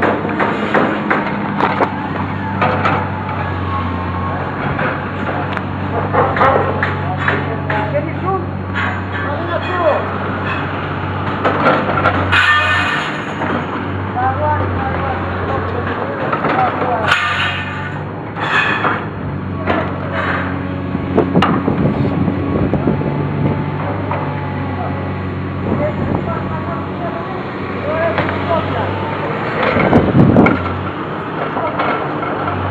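Steady low hum of a heavy diesel engine running, under people's voices, with scattered sharp knocks and clicks.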